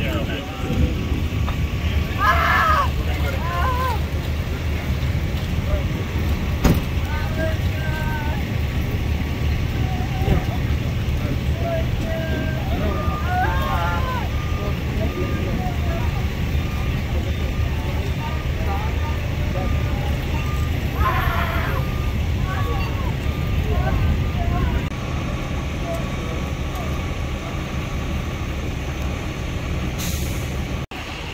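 Steady low engine idle from emergency vehicles standing by at the scene, with scattered voices talking.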